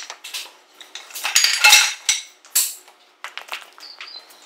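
Wooden boards clattering down onto a hard floor: a burst of knocks and scrapes loudest a little over a second in, another sharp hit shortly after, and smaller taps around them.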